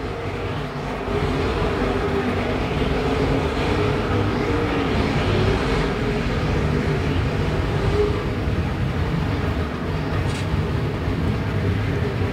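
A field of IMCA Modified dirt-track race cars running at racing speed, their V8 engines blending into one steady sound.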